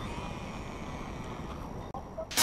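Steady wind buffeting an action camera's microphone, a low rumbling hiss of outdoor ocean-air noise, with a faint high tone just audible above it.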